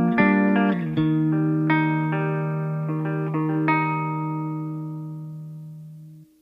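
Guitar notes ringing out over a held low note at the close of a rock song, with a few more notes picked along the way, the whole chord fading away steadily toward the end.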